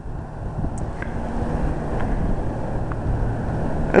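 Wind rumbling on the microphone, with a car engine running steadily underneath.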